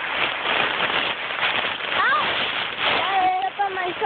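Dry leaves rustling and crackling right against a phone's microphone, as the phone lies in a pile of leaves. Voices call out briefly about halfway through and again near the end.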